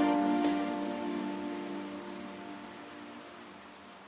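Background music fading out: a held chord rings on and dies away steadily until it is almost gone.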